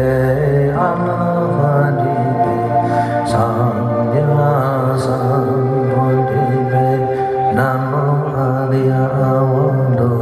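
A man chanting a Buddhist mantra in a drawn-out melodic line into a microphone, over sustained melodic backing music.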